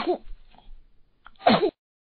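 Two short, cute voice-like cartoon sound effects: one right at the start, and a second about a second and a half in that falls in pitch.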